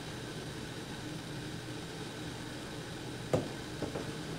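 Steady rushing noise of a stovetop tea kettle heating up close to the boil. A sharp knock about three seconds in, and a smaller one just after it, as the glass cayenne pepper shaker is set down on the counter.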